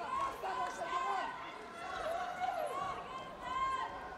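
Indistinct background voices in an arena, several people talking and calling out at once over a low murmur.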